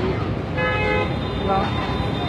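Steady road-traffic rumble with a short vehicle horn toot lasting about half a second, starting about half a second in.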